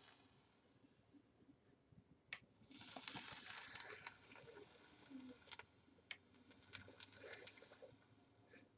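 A hit taken on a sub-ohm vape with a 0.26-ohm parallel Clapton coil: a click, then a soft hiss of the coil firing and the draw for about a second and a half, fading out, followed by a few faint scattered clicks.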